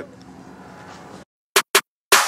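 Faint steady background hiss, then an abrupt drop to dead silence about a second in, broken by two short sharp clicks close together near the end: an edit cut before music starts.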